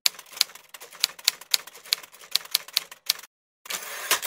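Typewriter keys clacking in a quick, uneven run of about five or six strikes a second, then a brief pause and a short, denser flurry near the end.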